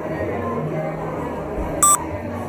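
Background music, with one short, loud electronic beep near the end: a Canon DSLR's autofocus-confirmation beep.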